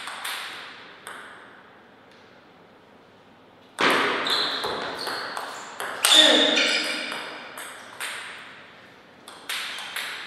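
Table tennis ball play: a few light bounces of the celluloid ball before the serve, a pause, then a rally of sharp clicking hits off the bats and table. The rally starts about four seconds in, has a few short squeaky tones among the hits, and its last hits come near the end.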